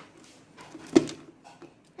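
A single sharp click about a second in, from an artificial plastic aquarium plant being set down among decorative pebbles in a dry tank, with faint handling rustle around it.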